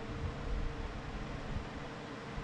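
Steady hiss of a running electric fan, with a faint even hum under it.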